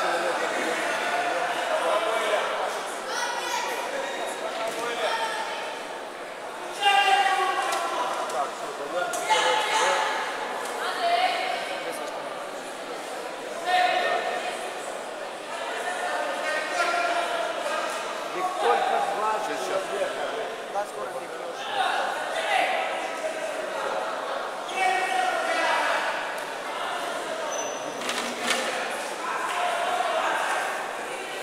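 Indistinct voices echoing in a large sports hall: talk and calls from people around a judo mat, rising and falling, with a steady background of hall noise.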